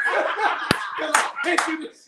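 Several people laughing hard together, with a few sharp hand claps in the middle of the laughter.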